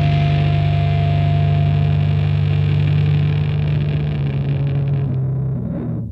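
Music: a loud, sustained distorted electric guitar chord held on one low note as a drone to close a rock song, its treble thinning out near the end.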